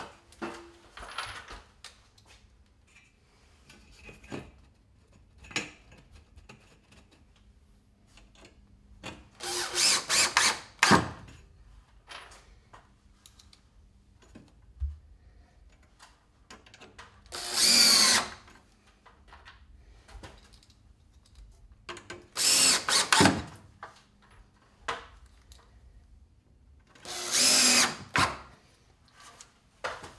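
Cordless drill/driver run in four short bursts, driving screws to fasten metal angle along the edges of a cold air return opening in the ductwork. Faint clicks and knocks of handling come between the runs.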